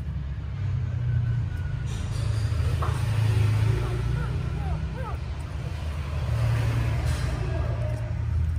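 Faint, short, high squeaks from newborn puppies nursing, scattered from about three seconds in, over a steady low rumble.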